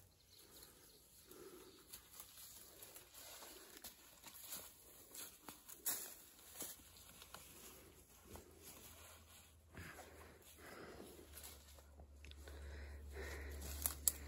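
Faint footsteps and rustling of leaves and branches as people push through forest undergrowth, in short scattered ticks and crackles. A low rumble builds near the end.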